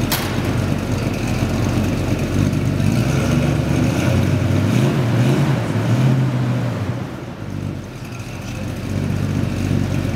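Engine of a custom Ford Mustang station wagon idling with a steady low rumble. The revs rise and fall gently a couple of times in the middle, then the sound drops back a little before settling.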